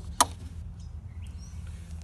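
A single sharp click of the metal latch on an RV's aluminium generator compartment door as it is released, over a steady low hum.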